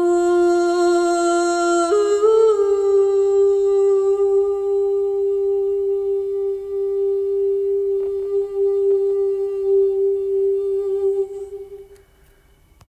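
A woman's voice holding one long note without words: it steps up slightly in pitch about two seconds in, then holds steady for about nine seconds, wavering a little near the end before fading out.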